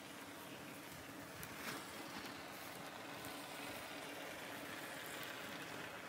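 Faint, steady hiss of a can of expanding spray foam laying down a bead.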